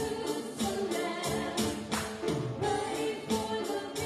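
A woman singing into a microphone, accompanied by piano and an electronic drum kit keeping a steady beat.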